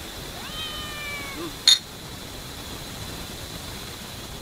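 A cat meows once, a single drawn-out call that rises and then slowly falls. A moment later comes one short sharp clink of glass beer bottles knocked together, the loudest sound.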